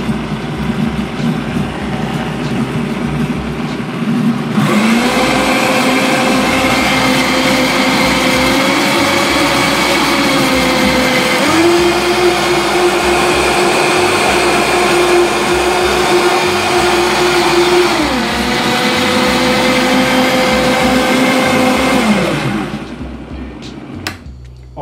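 Vitamix blender motor running, blending a banana and almond-milk smoothie. Its pitch steps up about four and a half seconds in and again about halfway, drops back down near the two-thirds mark, then winds down and stops just before the end.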